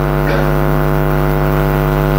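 A loud, steady low hum with many overtones, unchanging in pitch and level.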